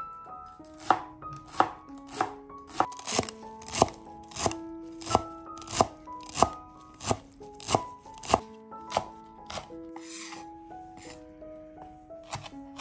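Chef's knife chopping fresh cilantro on a bamboo cutting board: sharp, even knocks of the blade on the wood, about three every two seconds, over soft background music.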